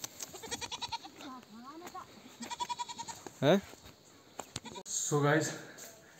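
Goat bleating close by: several quavering calls in the first three seconds and a short, loud bleat about three and a half seconds in. A man's voice speaks briefly near the end.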